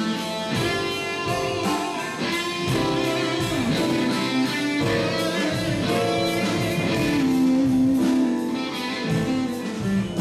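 Electric guitar played live with keyboard accompaniment, the guitar carrying a quick lead line with bent notes.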